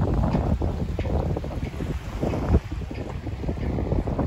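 Wind buffeting the microphone in uneven gusts, a low, blustery noise that eases somewhat in the second half.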